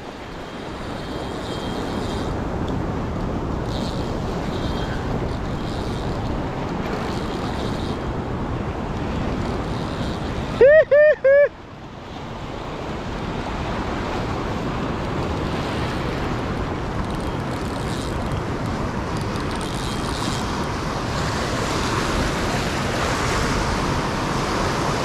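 Ocean surf washing and breaking around the wading angler, with wind buffeting the microphone: a steady rush of noise. About eleven seconds in, a brief, loud call of three rising-and-falling notes cuts through.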